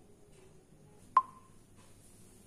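A single short electronic beep about a second in, a clear mid-pitched tone that starts sharply and dies away within a fraction of a second, over the faint hum of a quiet room.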